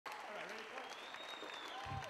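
Audience applauding, with voices calling out over the clapping, fairly faint.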